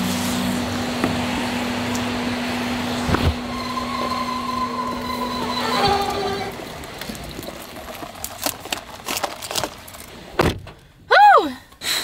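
A car door opened and then shut with a thud about ten and a half seconds in as someone climbs into the car, with a knock and handling clicks before it and a steady hum in the first half.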